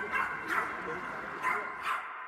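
Dogs barking in a few short yelps, about four of them, over a faint steady background tone.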